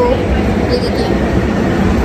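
Steady low rumble of road vehicle noise, loud and unbroken.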